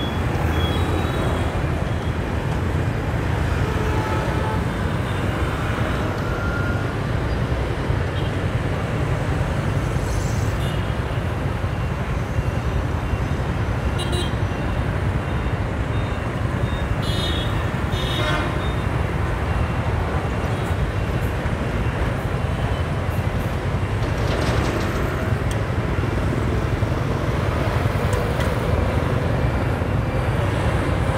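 Steady low rumble of motorbike and car traffic at a busy intersection, with several short horn toots from passing vehicles.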